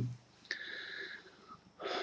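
A man's breathing in a pause between sentences. About half a second in there is a faint whistling breath lasting about a second, and just before he speaks again there is a short in-breath.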